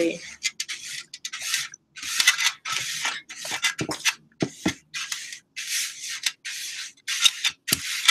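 Ivory black watercolour paste being worked by hand in an enamel tray: a run of about a dozen rhythmic rubbing and scraping strokes, roughly one every two-thirds of a second, as the wet pigment is mixed with water and gum arabic.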